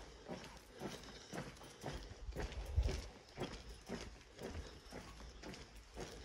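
Footsteps on a concrete lane, about two steps a second, with a low rumble about halfway through.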